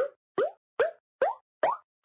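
Cartoon 'bloop' sound effects, short pops that each glide up in pitch, about two and a half a second, five in a row, ticking off pencils one at a time as they are counted on an animated chart.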